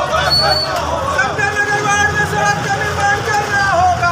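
A crowd of protest marchers shouting slogans together, with one long drawn-out call held for a couple of seconds that drops in pitch near the end. Underneath runs the steady low sound of a motorcycle engine close by.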